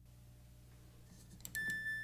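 Near silence, then about one and a half seconds in a click and a single steady, high-pitched electronic beep.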